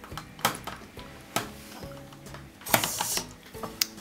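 Plastic food containers knocking and clattering on a kitchen counter as they are handled: a few sharp knocks, the loudest a short cluster about three seconds in, over faint background music.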